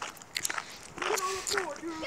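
A few sharp knocks and rustles in the first second, then a young voice crying out in a high, wavering, drawn-out sound without clear words.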